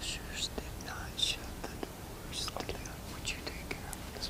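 A man whispering a private message into another man's ear: faint, breathy whispers with hissing s sounds and small mouth clicks.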